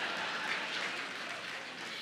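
Audience applauding, a steady patter of clapping that eases slightly toward the end.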